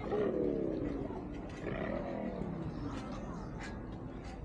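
A person's drawn-out vocal cry falling in pitch, then a second shorter one, with a few light clicks later on.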